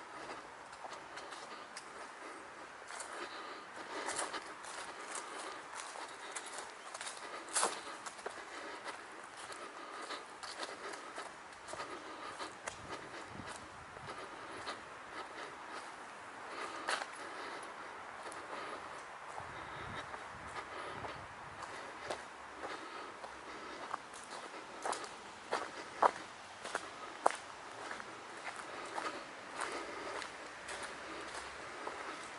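Footsteps of someone walking over grass and a path scattered with fallen leaves, an irregular run of soft steps with a few sharper ticks standing out.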